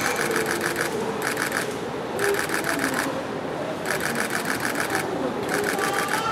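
Camera shutters firing in rapid bursts, about ten clicks a second, five bursts of half a second to a second with short pauses between, over a murmur of voices.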